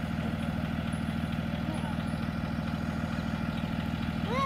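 School bus engine idling steadily, a low, even running sound.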